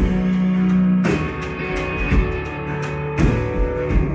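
Live band playing a guitar-led instrumental passage, with sustained guitar chords over drums and keyboard.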